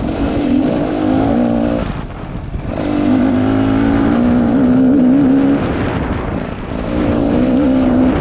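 Dirt bike engine revving up and down with the throttle while riding a trail. The revs fall off about two seconds in, build again, and dip once more shortly before the end.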